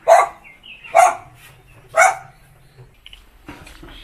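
A dog barking three times, about a second apart.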